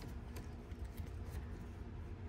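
Quiet outdoor background with a low wind rumble on the microphone and a few faint, soft ticks from fingers handling a vinyl decal overlay and its paper transfer sheet.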